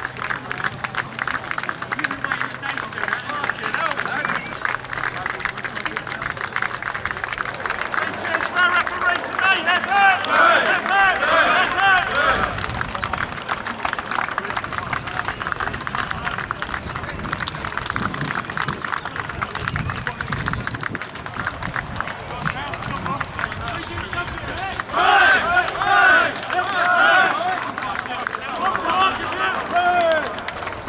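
Raised voices shouting and calling out, loudest about nine to twelve seconds in and again about twenty-five seconds in, over a constant dense crackle of clicks and rustling.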